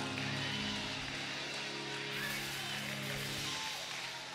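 Soft, sustained keyboard chord held under a pause in the preaching, fading out near the end.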